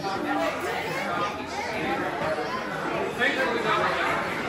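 Indistinct chatter of many overlapping voices in a busy, echoing shop, with no single clear voice standing out.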